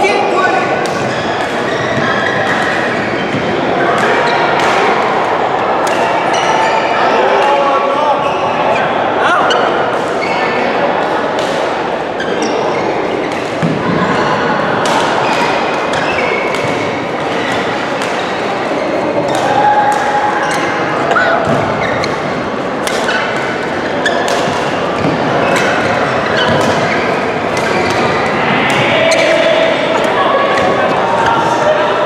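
Badminton rackets striking shuttlecocks, a string of sharp, irregular hits through the rallies, over the chatter of many voices in a large, echoing hall.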